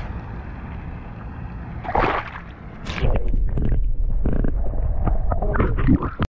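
Water splashing and sloshing close to the microphone as a peacock bass held at the surface is let go, getting louder and busier from about three seconds in.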